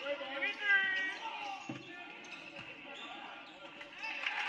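Basketball game sounds on a hardwood gym floor: several short high sneaker squeaks in the first second, a basketball bouncing, and background voices.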